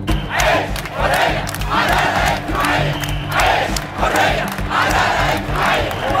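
A large protest crowd chanting in unison, a shout about once a second, with music running underneath.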